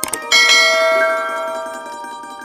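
Two quick mouse-click sound effects, then about a third of a second in a bright bell chime struck once and ringing down over about a second and a half: the notification-bell sound of a subscribe animation, over soft background music.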